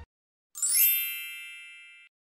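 A single bright chime sound effect, struck about half a second in, ringing with several high tones and fading away until it cuts off.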